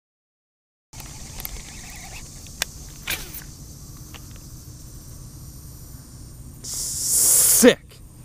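A baitcasting reel on a cast: a loud hissing whir lasting about a second as the spool pays out line, ending abruptly with a short falling tone as the spool is stopped. Before it there is only a low steady rumble of outdoor ambience with a sharp click, after a silent first second.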